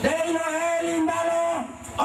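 A man's voice through a microphone chanting one long, drawn-out note that holds a steady pitch, falling away about a second and a half in.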